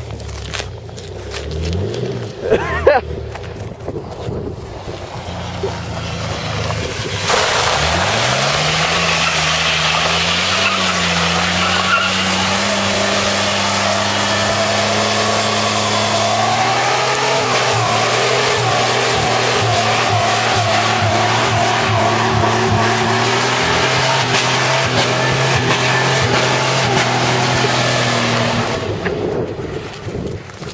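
A 1992 Dodge Dakota pickup's engine running at low revs, then revving up about seven seconds in as the rear tire breaks loose into a burnout. The tire squeal and high engine revs then hold steady for about twenty seconds before dropping away near the end.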